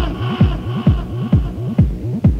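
Electronic dance music from a DJ set: a steady four-on-the-floor kick drum at a little over two beats a second, with a bassline underneath. A higher synth sound fades out about halfway through.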